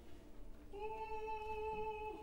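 Opera singing: a voice holds one high note from about a second in, then slides downward in pitch near the end.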